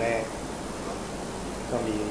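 A man's speech that breaks off for about a second and a half, leaving a steady hiss, before the voice resumes near the end.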